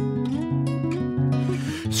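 Acoustic guitar played solo between sung lines of a song, chords struck in a steady rhythm and left ringing. A man's singing voice comes back right at the end.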